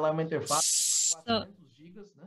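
Speech, broken about half a second in by a short burst of steady hiss lasting about two-thirds of a second that starts and stops abruptly. Then the voice resumes.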